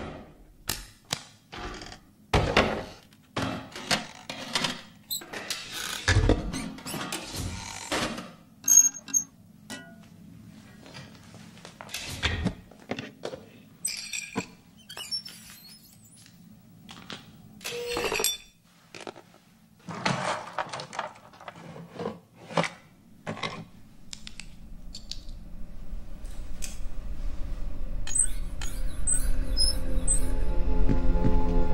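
A collage of close-miked ASMR trigger sounds: an irregular run of taps, clicks and crackly handling noises. In the last several seconds a low rumble builds and music with held tones begins to swell in.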